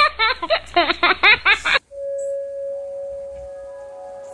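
A burst of laughter lasting just under two seconds, then a steady held tone that several more sustained notes gradually join, the start of a background music bed.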